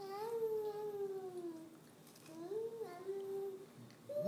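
A baby vocalizing in long, drawn-out vowel sounds: one held for nearly two seconds and sliding slowly down in pitch, then a second, shorter one that rises, dips and levels off about two and a half seconds in.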